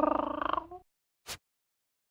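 Cartoon cat sound effect: a single raspy, drawn-out meow lasting about a second, followed by a short sharp hit.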